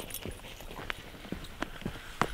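Footsteps of hiking boots on a grass and earth path, a soft, uneven tread of about two or three steps a second.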